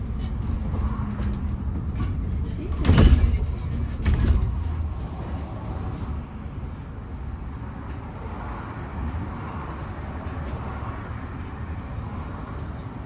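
Cabin noise of an Enviro400EV battery-electric double-decker bus on the move: a steady low road rumble with two loud knocks or jolts about three and four seconds in. It gets quieter from about six seconds in.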